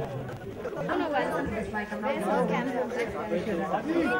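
Several people talking at once: unclear chatter.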